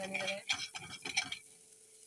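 A spatula stirring and scraping thick masala paste around a non-stick kadai in a few quick strokes, quieter after about a second and a half. The masala is being fried until the oil separates.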